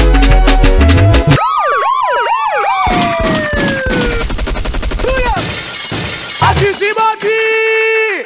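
Fast singeli dance beat that cuts off about a second in, followed by DJ sampler effects: a wobbling siren-like sweep falling in pitch, a run of rapid percussion hits, and a held synth note near the end.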